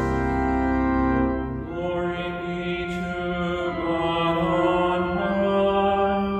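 Church organ playing slow, sustained chords of the liturgy music, changing chord about a second and a half in.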